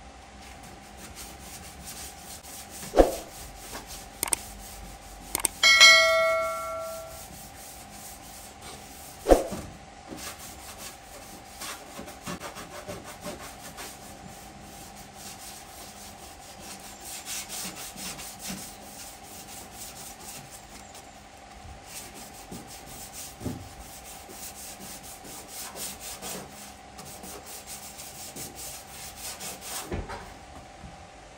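Hand-sanding of the filled rear body panel of a car, with steady rubbing strokes throughout. Two sharp knocks come about 3 and 9 seconds in. Around 6 seconds in, a metallic ring with several overtones fades over about a second, as of something striking the sheet-metal body.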